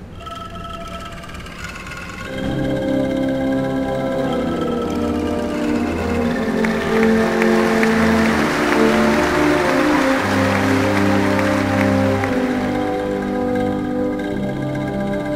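Military band playing slow, held chords on brass and woodwinds, soft at first and swelling louder about two seconds in. A soft rattling shimmer sits over the chords through the middle.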